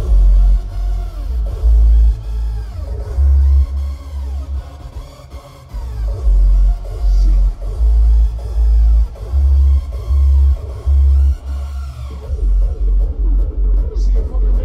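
Loud hardstyle dance music over a large sound system: heavy distorted kick drums land in uneven, syncopated blocks under a gliding synth lead. The beat thins out briefly about five seconds in, then comes back, and a steady run of fast kicks takes over near the end.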